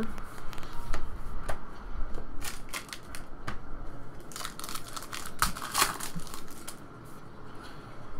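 Trading cards and foil card-pack wrappers being handled: cards clicking and sliding against one another, and crinkling from the wrappers, in scattered bursts that are densest about two and a half seconds in and again around the middle.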